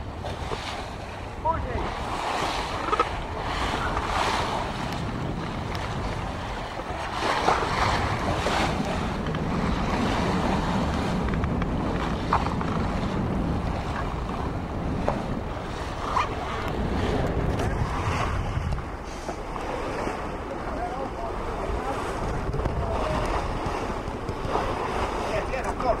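Wind buffeting the microphone over the rush and splash of water along the hull of a sailing yacht under way, swelling and easing by turns.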